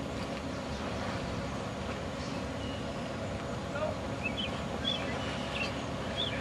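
Steady low rumble of outdoor background noise, with a few faint, short high chirps scattered through it.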